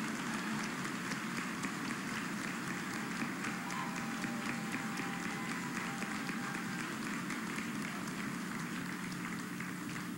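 Large audience applauding, a steady mass of hand claps.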